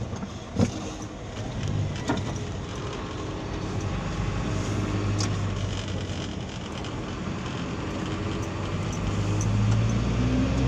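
Car running on the road, heard from inside the cabin: a steady low engine and road hum that grows louder near the end. A sharp click about half a second in, and a smaller one about two seconds in.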